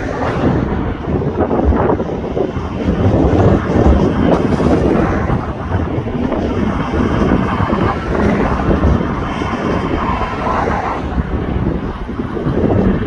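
Loud wind buffeting the microphone in irregular gusts, with a low rumble of vehicle noise underneath.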